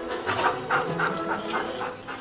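A search-and-rescue dog panting in quick, short breaths, about four a second.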